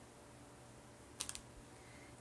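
Quiet room tone with a quick cluster of three light clicks about a second in, as small objects are handled.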